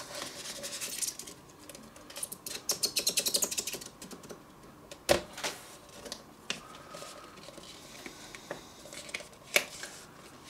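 Stiff white card and paper being handled: a card sliding and rustling at first, then a quick run of small clicking scrapes about three seconds in. A few sharp taps follow, the loudest about five and nine and a half seconds in, as fingers press and rub over embossed card CD sleeves.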